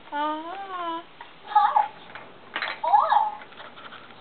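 Baby babbling: one long drawn-out vocal sound in the first second, then short squeals with a few clicks around them.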